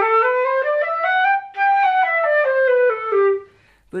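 Concert flute playing a G major scale slurred up an octave from G to G and back down, eight notes each way. A new slur starts at the top where the direction changes, leaving a short break about a second and a half in, the Baroque way of articulating a change of direction.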